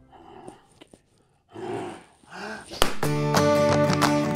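Two brief growl-like vocal sounds in a quiet gap, the second bending in pitch. About three seconds in, strummed acoustic guitar music starts loudly and runs to the end.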